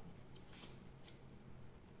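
Faint rustle and swish of a tarot deck being shuffled and handled, with the clearest swish about half a second in.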